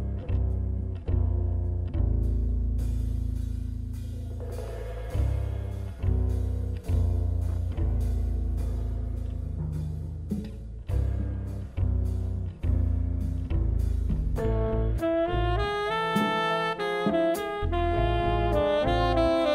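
Live jazz quintet: an upright double bass plays deep notes under drum-kit cymbals and drums. Near the end, tenor saxophone and trombone come in on the melody.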